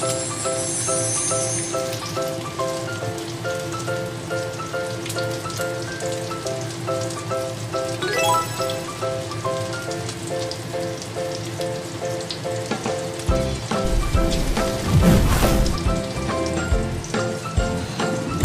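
Battered fish fillets deep-frying in hot oil in a wok, a steady crackling sizzle, under background music with repeating notes. A few low thumps come about three-quarters of the way through.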